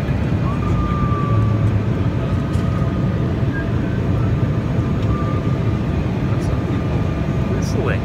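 Steady airliner cabin noise, with a person whistling a faint, long-held note over it from about half a second in until about five seconds in.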